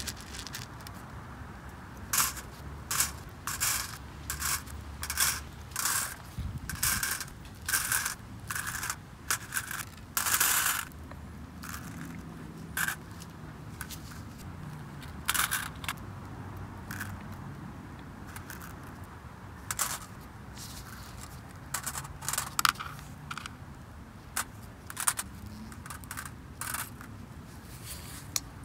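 Small hard Paraloid B72 acrylic resin pellets dropped in bunches onto crinkled aluminium foil on a digital scale: irregular runs of light clicks and rattly crackles with gaps between them, sparser near the middle.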